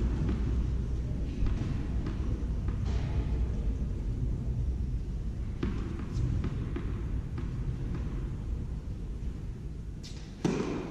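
Steady low hum of a large indoor tennis hall with spectators murmuring, and a few soft taps of a tennis ball bounced on the court before a serve.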